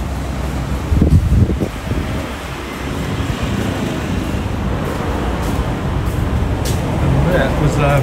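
Street traffic noise from cars and motor scooters on the road ahead, a steady low rumble with a louder surge about a second in.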